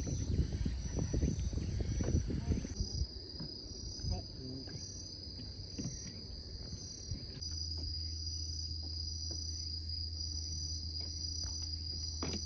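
Insects chirping in a steady, high-pitched trill in the summer evening, with a low rumble of wind or handling noise on the phone microphone during the first few seconds.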